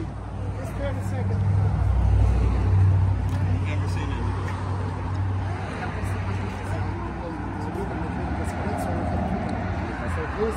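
Street traffic: a motor vehicle's low engine rumble, swelling to its loudest about two to three seconds in and then running on steadily, with faint voices underneath.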